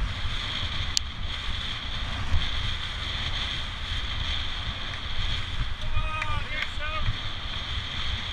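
Wind rushing over the microphone of a camera on a bicycle at speed, over a steady low rumble of tyres on tarmac and a constant high hiss. A single sharp click about a second in, and a few short chirping calls between six and seven seconds in.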